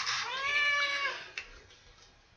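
Domestic cat meowing once: one long meow that rises a little and falls away over about a second.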